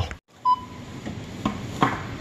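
A single short beep from a checkout barcode scanner about half a second in, then a couple of light knocks as plastic-wrapped meat trays are handled.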